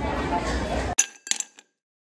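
Busy concourse crowd chatter that cuts off abruptly about a second in, followed by two bright, ringing clink-like chime hits of an edited-in sound effect a third of a second apart.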